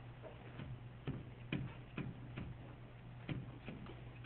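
Irregular light clicks and taps of a stylus on a writing screen as handwriting is put down, over a steady low hum.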